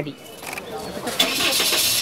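Outdoor street noise with a vehicle engine running: a loud, even hiss that starts about a second in and cuts off suddenly.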